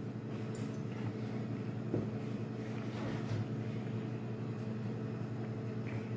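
Steady low electrical hum with several even tones, from a household appliance motor running, and a faint click about two seconds in.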